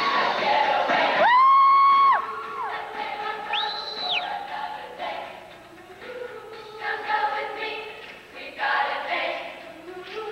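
A large group of young women singing together, with a held high note ringing out about a second in. A brief, very high thin tone sounds near four seconds in.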